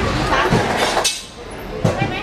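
Metal tube poles for market stalls clanking as they are handled, with one sharp metallic clank near the end, over voices.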